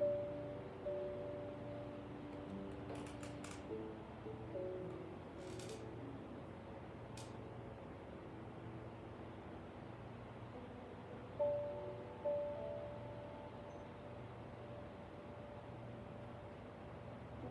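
Quiet background music of slow, held notes, with a few notes struck and left to fade, and a few faint clicks in the middle.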